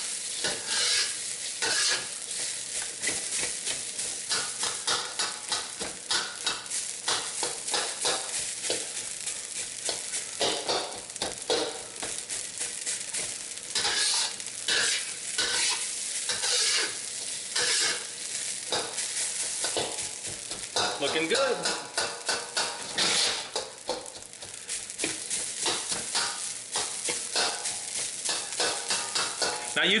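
Metal wok spatula scraping and tossing dry, day-old rice around a hot carbon steel wok, with a continuous sizzle of frying and irregular metal-on-metal scrapes throughout.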